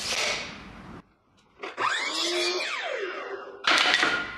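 Sliding compound miter saw running through a crosscut in a board, then its blade winding down with a falling whine. A sudden loud knock comes in near the end.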